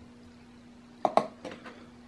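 Metal fly-tying scissors set down on a hard work surface: two sharp metallic clacks about a second in, then a few lighter taps as they settle, over a faint steady hum.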